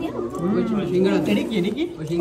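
Several people talking at once close by: overlapping conversation and chatter around a crowded table.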